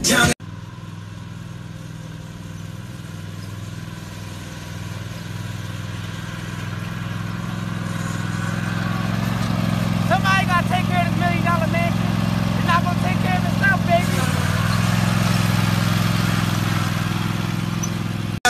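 Toro zero-turn riding mower's engine running steadily, growing gradually louder over the first ten seconds or so. A voice speaks briefly from about ten to fourteen seconds in.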